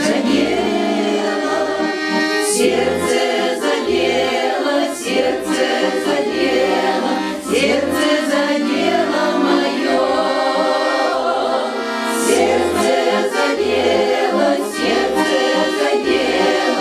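A women's folk choir singing a Russian song together, accompanied by an accordion playing a steady bass rhythm underneath.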